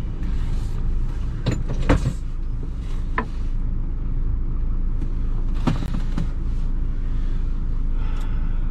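Renault truck's diesel engine idling steadily, with a few short knocks and clicks over it.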